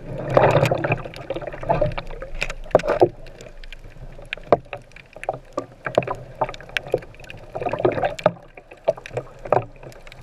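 Underwater sound through a camera's waterproof housing: a muffled wash of moving water that swells near the start and again around eight seconds, with many short sharp clicks scattered throughout.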